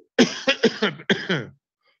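A man coughing several times in quick succession, a short fit of coughs lasting about a second and a half.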